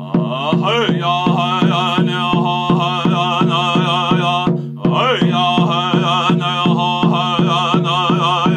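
A man singing a chant with a wavering voice over his own steady beat on a deep-toned cylindrical hand drum, about three strikes a second. The voice stops briefly a little past halfway and comes back in with a rising line while the drum keeps going.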